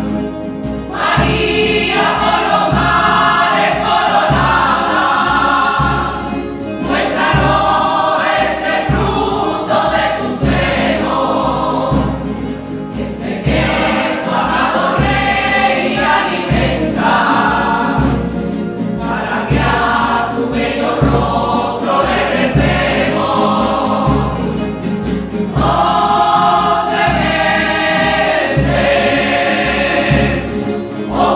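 A coro rociero, men and women singing together, accompanied by strummed Spanish guitars and a drum keeping a steady beat.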